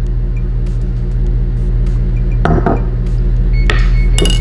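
Background music throughout. About two and a half seconds in come a couple of light knocks, and near the end a sharper clink, from a plastic measuring spoon being tipped into a bowl and set down on a cutting board.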